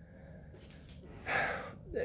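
Faint room tone, then about a second and a half in a man's quick, audible breath in through the mouth.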